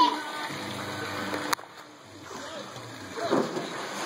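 A child jumping off a diving board into a swimming pool, the splash of the water about three seconds in, with a sharp knock about one and a half seconds in and children's voices.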